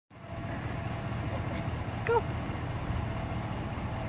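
Steady low outdoor rumble with a faint steady hum above it. A voice calls "Go!" once, about two seconds in.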